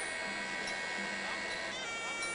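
Pi java, the Thai oboe of Muay Thai ring music, holding one long high nasal note that bends in pitch near the end.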